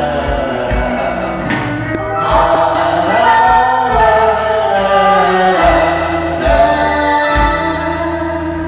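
Live singing into a microphone over backing music with a low bass beat.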